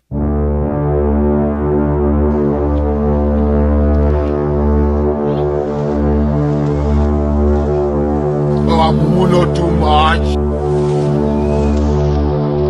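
A deep, sustained horn-like drone with many overtones, a dramatic sound effect laid over the vision scenes, starting suddenly and holding steady throughout. About nine seconds in, a brief wavering voice-like sound rises over it.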